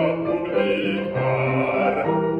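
Bass voice singing a Baroque aria with grand piano accompaniment, in held notes.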